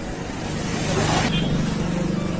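Street noise with a motor vehicle engine running close by, swelling to its loudest about a second in and easing off near the end.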